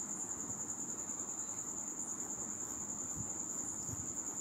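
Crickets chirping in one continuous high-pitched trill.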